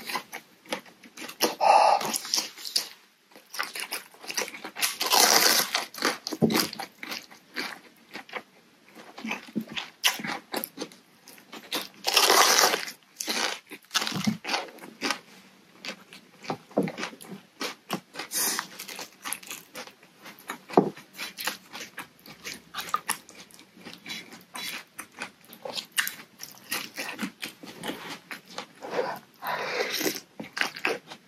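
Close-up eating sounds of a person eating very hot noodle soup: chewing and wet mouth clicks throughout, broken by a few loud huffs of breath, two of the biggest about 5 and 12 seconds in, as she blows air to cool a mouth burnt by the hot food.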